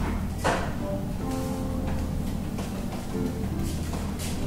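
Acoustic guitar played with a flat pick, picked notes and chords at an unhurried pace. A single sharp knock comes about half a second in, over a steady low hum.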